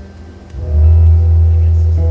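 Live band with electric bass and guitars: quieter playing, then about half a second in the band comes in loud on a held low bass note with ringing guitar notes above it.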